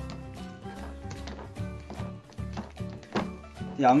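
Background music with a steady low bass line, over which light clicks and taps sound now and then, the loudest a little after three seconds: chopsticks knocking against a paper instant-noodle cup while noodles are stirred in sauce.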